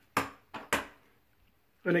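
Three short sharp knocks of hard objects, the last two in quick succession, each with a brief ring-out.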